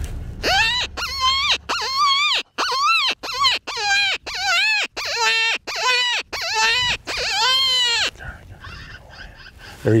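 FoxPro Shockwave electronic predator caller playing coyote calls: about a dozen short, rising-and-falling yelps in quick succession, ending near eight seconds with one longer drawn-out call.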